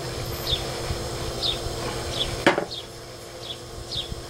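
A plastic test-kit comparator cell set down with a single sharp knock on a wooden table about halfway through, after being swirled between reagent drops. Short high chirps, each falling in pitch, repeat every half second to a second throughout.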